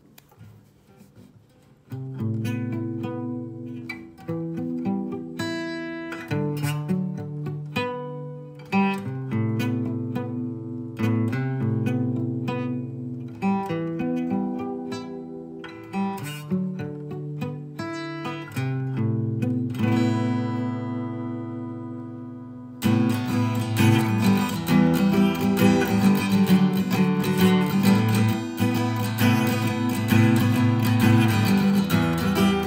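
Acoustic guitar playing an instrumental intro: starting about two seconds in, picked notes and chords ring out one after another, a held chord fades away, then louder, steady strumming begins about three-quarters of the way through.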